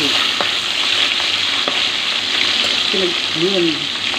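Tilapia steaks frying in hot oil in a metal pan, a steady loud sizzle, with a couple of sharp spatula taps against the pan in the first half.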